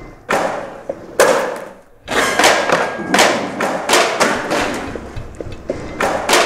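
Construction banging echoing in a large, empty steel-framed hall: about eight heavy, irregular thuds and bangs, each ringing on in the hall's echo.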